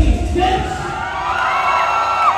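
Loud dance music with a heavy beat cuts off under half a second in. A large crowd cheers and whoops, with long high-pitched shrieks over the top.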